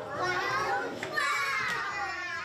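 A group of young children's voices together, several high voices overlapping at once without a break.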